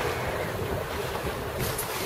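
Wind on the microphone and sea water rushing and sloshing along the hull of a small sailing boat under way in a gentle swell: a steady rushing noise, with a short brighter hiss near the end.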